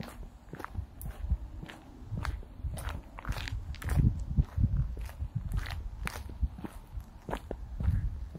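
Footsteps on a paved pavement: a run of irregular short steps and clicks over a low rumble that swells about halfway through.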